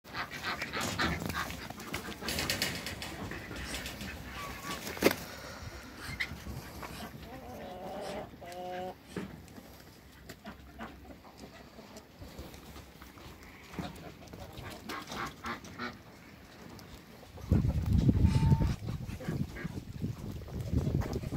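Farmyard poultry among a flock of Muscovy ducks, with a few short calls and scattered knocks and rustles. A louder stretch of low rumbling noise comes near the end.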